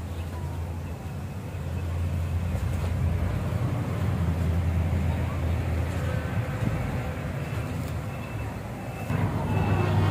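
A steady low engine rumble of a vehicle, growing louder about two seconds in and easing off near the end.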